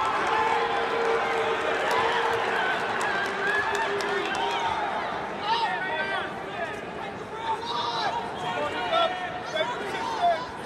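Crowd in a large arena: a steady hubbub of many voices, with individual shouts from the stands and mat side rising above it in the second half.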